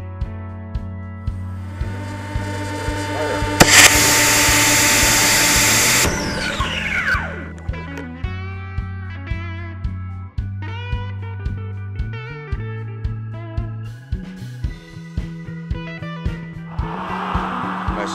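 Background music with a steady beat. About three and a half seconds in, a model rocket motor fires with a sudden loud rushing hiss that cuts off abruptly about two and a half seconds later.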